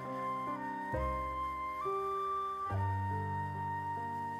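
Instrumental background music: a flute-like melody moving from note to note about once a second over sustained low accompanying notes.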